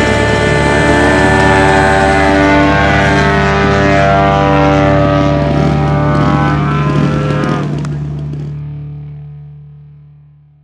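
Desert Aircraft DA-85 gasoline twin engine of a large RC aerobatic plane running at high power. Its pitch rises about half a second in and then holds, breaking off around eight seconds in as the sound dies away.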